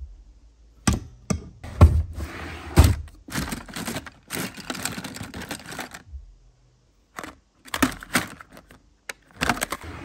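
Desk supplies being handled: a few sharp knocks as things are set down, with rustling and sliding between them. After a short lull about six seconds in, a quicker run of clicks and clatter follows as pens and plastic pen cases are picked out of a drawer.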